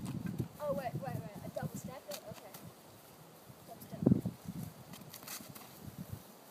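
Dull thuds of a boy's feet kicking and stomping against a tree trunk. One comes at the start and a heavier one about four seconds in, with a child's wordless voice calling out around the first second.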